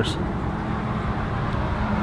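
Steady rumble of road traffic. In the second half a man hums a low, held 'mmm' before he speaks.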